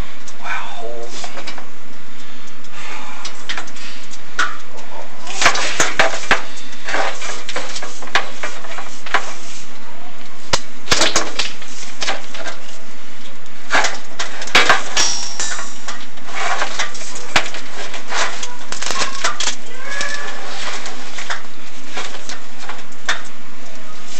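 Irregular scraping and knocking clicks from the chimney inspection camera and its cable being fed down the flue, thickest through the middle, with some low murmured speech.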